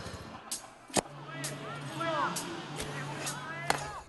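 A football kicked several times on the pitch, sharp hits about a second in and again through the second half, over distant shouts from players.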